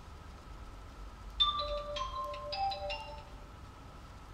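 A short electronic chime tune of about five clear notes at different pitches, lasting about two seconds. It starts about a second and a half in, with the first note the loudest.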